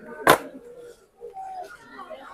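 A cardboard spice-mix box dropped into a wire shopping cart, landing with a single sharp knock about a third of a second in, then faint rustling.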